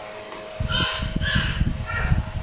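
A bird calling three times in quick succession, harsh calls about half a second apart.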